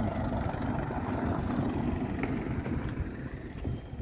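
Steady low rumble of a car moving on a cobbled street, mixed with some wind on the microphone.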